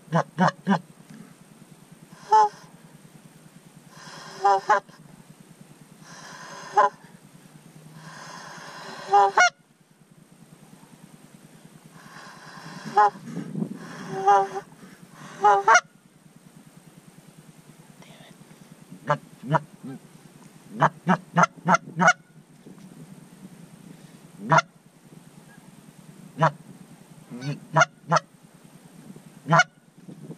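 Canada geese honking: many short, sharp single honks and clucks, with longer runs of overlapping calls in the first half.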